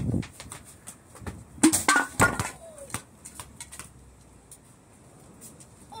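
Soccer ball kicked and hitting hard surfaces: a dull thud at the start, then two sharp hits about half a second apart less than two seconds in, followed by a brief vocal sound and a few faint scuffs and taps.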